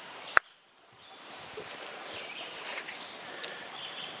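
Outdoor creek-side background noise: a sharp click about a third of a second in, a brief drop to near silence, then a steady even hiss with a few faint high chirps around the middle.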